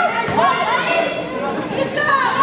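A basketball being dribbled on a hardwood gym floor, with several voices calling out over it in a large gym.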